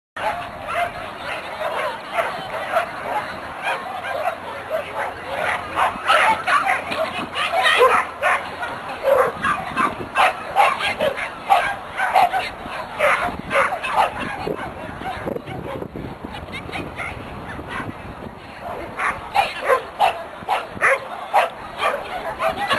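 A dog barking over and over in short, sharp barks, coming thick and fast through the middle, easing off for a few seconds, then picking up again near the end.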